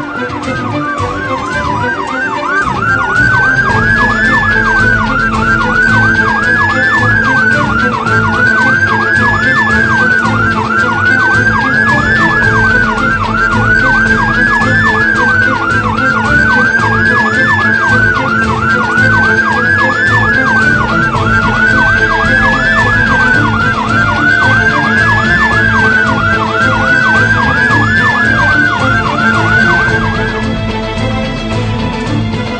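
Electronic siren. It opens with a falling sweep, then settles into a slow wail that climbs and drops about every two and a half seconds, with a rapid warble laid over it. A steady low hum runs underneath.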